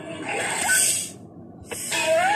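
A loud breathy hiss from an animated serpent-like dragon, a cartoon sound effect, lasting about a second before it stops. A single click follows near the end.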